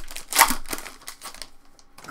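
Wrapper of a 2020 Topps Stadium Club Chrome trading card pack crinkling as it is pulled open and off the cards. It is loudest about half a second in and dies away by about a second and a half.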